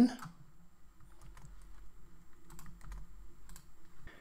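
Typing on a computer keyboard: a scattered run of soft key clicks as a password is entered.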